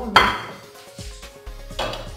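Kitchenware clanking on a gas stove: one sharp knock just after the start with a short ringing tail, then a few faint taps.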